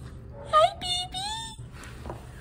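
Three short high-pitched wordless vocal notes in quick succession, the first and last gliding upward in pitch.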